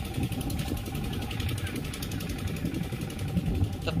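Engine of an irrigation pump set running steadily in the background, heard as a continuous low drone under a rough rumble.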